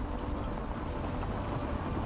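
A car driving over an uneven road surface: a steady rush of tyre and road noise.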